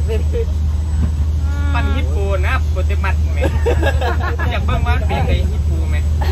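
People talking in Thai over a steady low hum.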